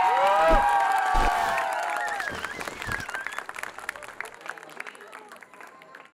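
Audience applauding and cheering at the end of a dance number, with long drawn-out whoops over the clapping for the first two seconds or so. The applause then thins and fades away toward the end.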